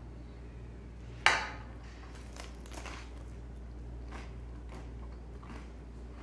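A single loud crunch about a second in as a bite is taken from crisp peanut butter toast topped with pickles and sriracha, followed by faint crunching of chewing, over a low steady hum.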